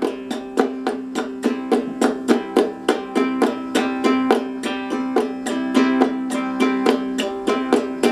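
Caramel concert ukulele strummed in a steady, even rhythm, about four strokes a second, ringing the same chord over and over.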